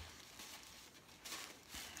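Faint rustling of tissue paper as wrapped items are handled and lifted out of a gift box, slightly louder about halfway through.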